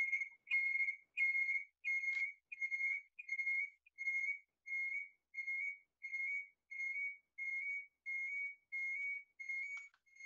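A high, whistle-like tone repeating about one and a half times a second, gradually growing fainter.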